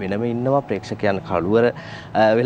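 Speech only: a man talking, with no other sound standing out.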